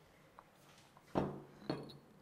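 A stone mortar and pestle being readied to grind garlic: a sharp knock about a second in, then a light, ringing clink.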